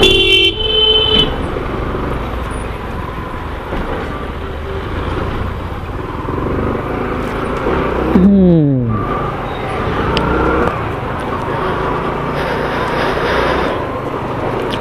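Yamaha R15M motorcycle ridden slowly through town traffic, recorded on the bike's action camera. A vehicle horn sounds for about the first second, over steady engine and road noise. A short sound falls in pitch about eight seconds in.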